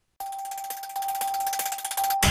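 Closing TV station ident music. It starts suddenly after a moment of silence with a single steady tone held over rapid, fine ticking, and grows louder about a second in.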